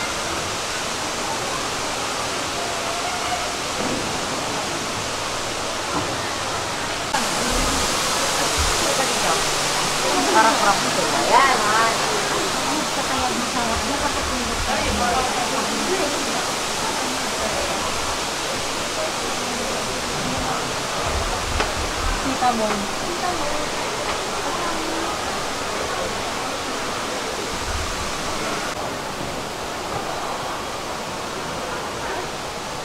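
Steady rush of water from the Cloud Forest dome's indoor waterfall and misting, with a brighter hiss from about seven seconds in until near the end. Visitors' voices can be heard indistinctly in the background.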